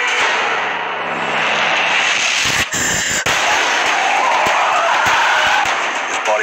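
Loud horror-film sound effects: a dense noisy swell with a cluster of sharp cracks and a sudden hit about halfway through.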